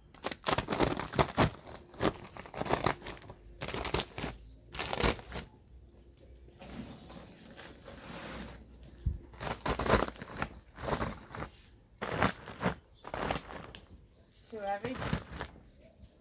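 Packed snow and ice crunching and crackling in irregular bursts, in two spells with a quieter stretch between. A brief voice near the end.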